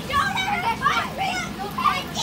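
Several children's voices chattering and calling over one another in short overlapping bursts, with a steady low hum underneath.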